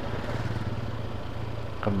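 Small motorcycle engine running at low speed, a steady low hum as the bike rolls slowly along the road.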